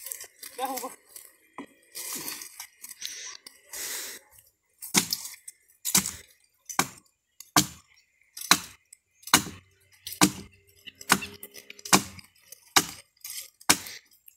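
Hand chopping into a small tree trunk with a bladed tool: sharp blows, about one a second. The chopping starts about five seconds in and goes on for about a dozen strokes.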